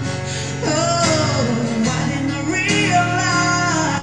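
Live acoustic rock performance: a male tenor voice singing over strummed acoustic guitar, the melody climbing in pitch in the second half toward the singer's high register.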